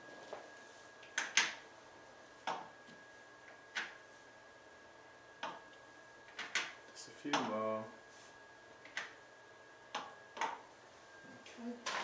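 Clear acrylic stamping block tapped on an ink pad and pressed down onto card on a tabletop: a series of light, irregular knocks and clicks, roughly one a second.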